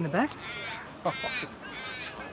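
A crow cawing twice, two harsh calls a little over half a second apart.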